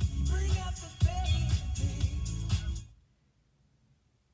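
Music with a heavy beat playing from an FM car radio tuned in during a station scan. It cuts off suddenly about three seconds in as the tuner mutes and moves to the next frequency.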